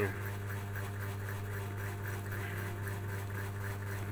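A steady low hum with no other events: an unchanging background drone that also runs under the narration.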